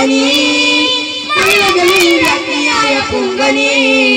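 Boys singing a Malayalam Nabidina (Prophet's birthday) devotional song together into microphones, holding two long notes with a moving phrase between them.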